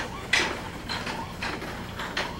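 Spring Flamingo planar bipedal robot walking on a concrete floor: its feet strike the ground about twice a second, the first strike the loudest, with its actuator mechanisms clicking and a steady low hum underneath.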